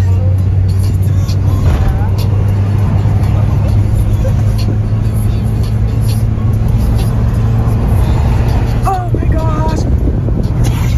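Inside a Toyota car on the move: a steady low engine and road drone with a constant hum of tyre noise. Voices can be heard near the end.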